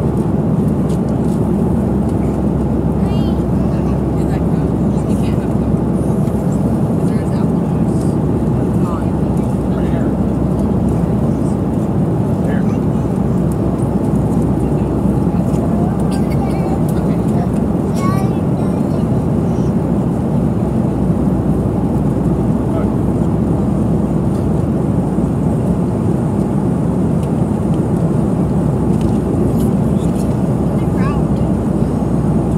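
Steady cabin noise inside a Boeing 737 airliner: an even rumble from the engines and air system, with faint voices of other passengers now and then.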